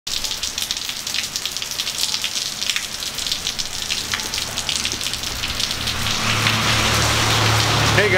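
Rain falling, a dense patter of drops hitting hard surfaces. In the last couple of seconds a low steady rumble builds under it.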